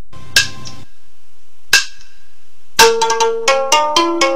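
Opening theme music of a TV drama: two sharp percussion strikes that ring out, then from about three seconds in a quick run of plucked-string notes.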